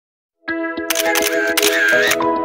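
Music with a steady beat starts about half a second in; from about one second in, a camera shutter fires rapidly over it in two runs.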